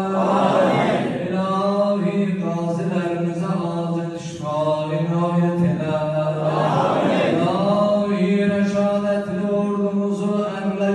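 A man chanting an Islamic supplication (dua) into a microphone in long, held melodic phrases. The voice turns rougher and noisier twice, about half a second in and again around seven seconds.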